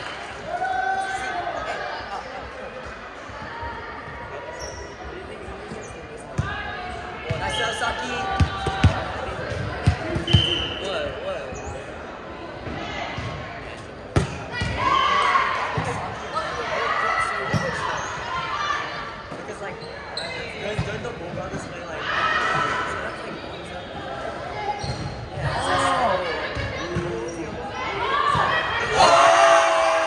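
Volleyball being played in a large echoing gym: voices call out across the hall throughout, and a ball thuds several times around the middle before one sharp hit of the ball a few seconds later.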